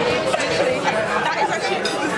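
Chatter of several people talking at once around dinner tables, voices overlapping with no single clear speaker.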